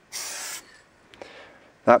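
Low-pressure Sigma aerosol spray paint can sprayed through a Fresh Paint Skinny cap: a half-second burst of hiss, then a fainter hiss. The cap puts out a lot of paint for a skinny.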